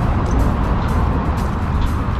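A steady, low rumbling noise with no distinct events.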